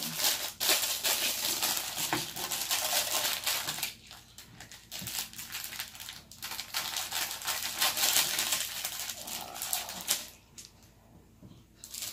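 Plastic food wrapping crinkling and rustling as it is pulled open and cut with scissors, in two long stretches with a quieter gap about four seconds in; it goes almost quiet near the end.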